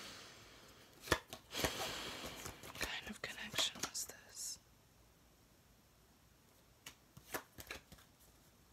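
Tarot cards being handled on a table: a sharp snap about a second in, then papery rustling and light taps as cards are slid and laid down. After a quiet stretch, a few more taps near the end as another card goes onto the pile.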